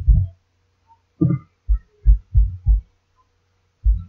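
A series of about eight short, low, dull thumps at an uneven pace, over a faint steady electrical hum.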